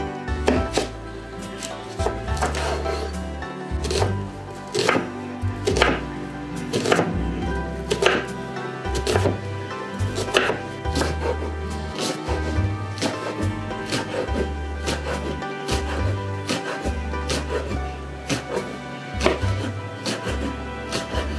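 A chef's knife chopping a white onion on a wooden cutting board: sharp, irregular strikes of the blade on the board, some in quick runs. Background music with a steady bass line plays under it.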